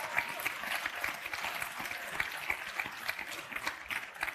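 Audience applauding, the clapping thinning out near the end.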